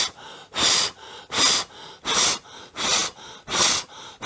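A man blowing short, hard puffs of breath, about six in four seconds at an even pace, to spin a small wooden thaumatrope on its pivot. Softer breaths fall between the puffs.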